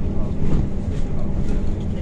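Cabin ride noise of a MAZ-103T trolleybus under way: a steady low rumble of tyres and body with a constant low hum.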